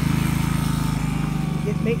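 Harbor Freight electric transfer pump's motor running with a steady, fast-pulsing hum as it pumps water out of a rain barrel.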